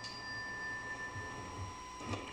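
A pause in speech: faint steady high-pitched tones over a low hum, one of the tones fading out near the end.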